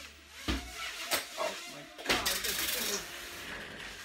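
Small Holy Stone toy drone crashing indoors: sharp knocks about half a second and a second in as it strikes and falls, then a louder rattling clatter lasting about a second, starting about two seconds in.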